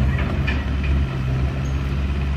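Steady low drone of a mini excavator's diesel engine running as it works.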